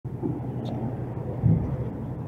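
A motorcycle engine idling steadily, with a brief louder low swell about one and a half seconds in.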